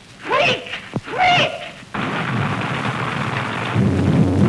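Two shrill screamed cries in a woman's voice, each about half a second long, on an old 1930s film soundtrack. About two seconds in they give way to a steady hiss of rain and storm.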